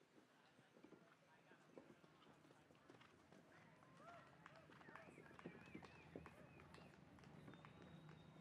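Faint, soft hoofbeats of a horse cantering on sand arena footing, with a faint voice in the background around the middle.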